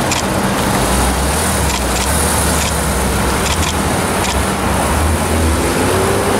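Porsche 911's flat-six engine pulling away from the curb and accelerating into traffic: a deep, steady engine note over road-traffic noise, with a faint rising pitch near the end.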